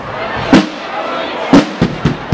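Rope-tensioned parade side drums struck together by a Fasnacht drum corps: a few loud, sharp strokes, one about half a second in and two in quick succession about a second later.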